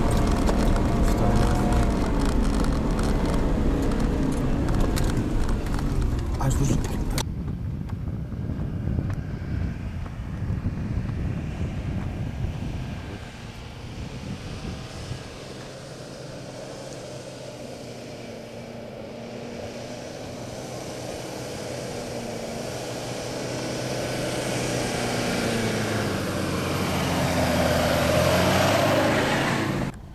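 Engine of an off-road 4x4 climbing a steep, loose dirt slope, loud and close for the first seven seconds. After a sudden cut, a second stretch has an SUV engine labouring up the hill, faint at first and growing steadily louder as it climbs toward the listener.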